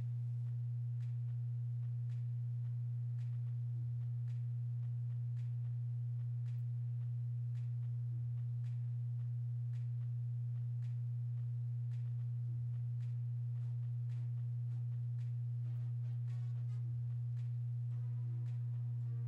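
A steady low hum: one unchanging tone with faint overtones, with faint light ticks scattered through it.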